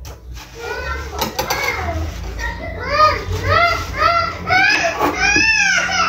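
A young child's voice in a quick run of short, high rising-and-falling wails, about two a second, starting about three seconds in.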